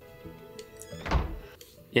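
A door opening and closing, shutting with a single low thud a little past a second in, over soft background music.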